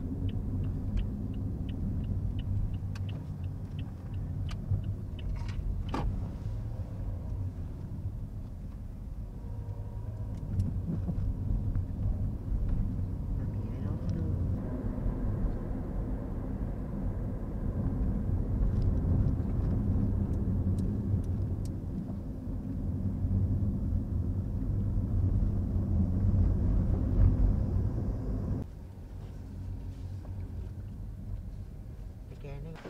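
Engine and tyre rumble of a moving car heard from inside its cabin, a low steady sound that swells and eases with the driving, with a run of light ticks in the first few seconds. The rumble drops off sharply near the end as the car comes to a stop.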